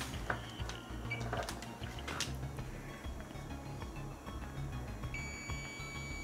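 A Fluke digital multimeter's beeper sounding one steady high beep from about five seconds in, as its probes on a desoldered diode read a dead short: the diode is shorted. A few faint clicks of handling come before it.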